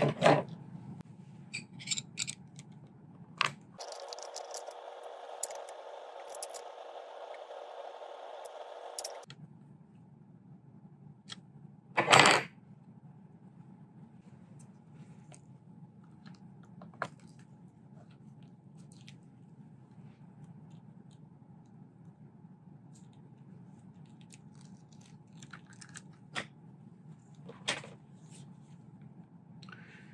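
Air rifle action and stock being handled and assembled with a small hand tool: scattered light clicks, taps and scrapes, with a sharp knock about twelve seconds in and another near the end. A five-second stretch of steady hiss with a faint hum starts about four seconds in.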